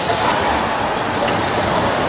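Steady din of a bumper car ride: electric bumper cars running around their floor amid a busy amusement area, loud and without distinct crashes.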